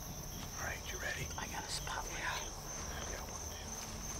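Night insects calling in a steady, high-pitched, unbroken chorus, with quiet whispered voices over it in the first half.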